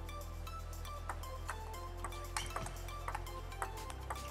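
Table tennis ball being struck back and forth in a rally: sharp short clicks off the rackets and table, starting about a second in and coming roughly every half second, over steady background music.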